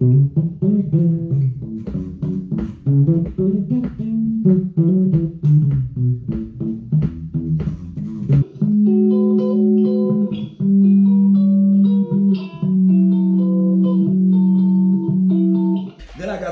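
Short-scale electric bass played unaccompanied, demonstrating its neck pickup volume: a quick run of plucked notes with sharp attacks, then, from about halfway through, held notes and chords left to ring.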